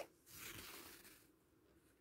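Mohair wool yarn being drawn through fabric with an embroidery needle: a faint rasping swish lasting about a second.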